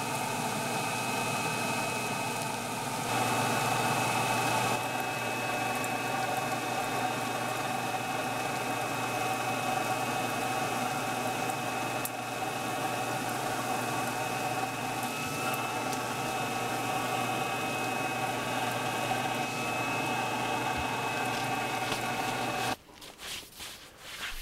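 Small shop dust collector's blower running steadily, a high whine over a low hum, sucking sawdust off the floor through 4-inch flexible hoses. It cuts off suddenly near the end.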